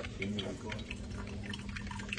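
Drip coffee maker brewing, with coffee dripping into the glass carafe as a string of irregular small ticks over a steady low hum.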